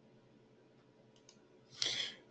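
Mostly quiet room tone with a couple of faint computer mouse clicks about a second in, then a short breathy intake near the end.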